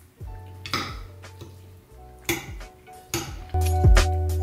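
A metal fork clinks and scrapes against a ceramic plate a few times as food is picked up. Background music plays throughout and gets louder, with a beat, near the end.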